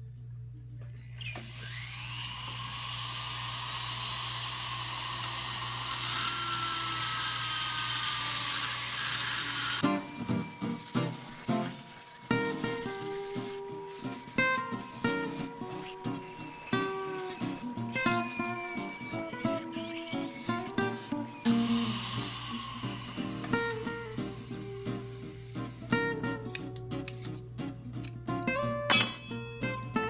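Jeweller's flex-shaft rotary tool spinning up and grinding at the lead-bonded joint of a sterling silver knife handle, a high whine that is loudest about six to ten seconds in. In the middle stretch plucked guitar music is heard instead, and the tool's whine comes back for a few seconds later on.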